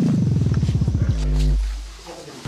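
Comedy sound effect: a falling tone that breaks into rapid pulses, slowing as it drops, then settles into a low hum that fades out near the end.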